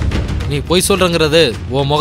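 Dramatic background score with repeated heavy drum hits and low booms under a man's agitated speech.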